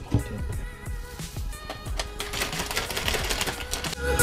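Background music over a quick run of small plastic clicks and taps, from a scoop, a powder tub and a plastic shaker bottle being handled as pre-workout powder is scooped in and the bottle is closed.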